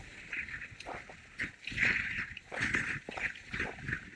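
Skis scraping and carving on groomed snow during turns: a hissing scrape that swells into about four irregular loud bursts, the loudest about two seconds in.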